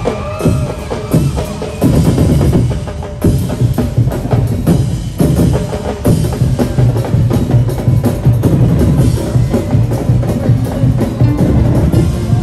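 Loud drum-driven streetdance music: bass drums and other percussion beating a steady, driving rhythm, with a couple of short breaks in the beat.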